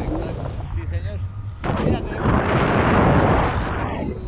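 Wind buffeting the microphone of a selfie-stick camera during a paraglider flight. It grows into a loud, rough rush about two seconds in, with a brief voice in the first second.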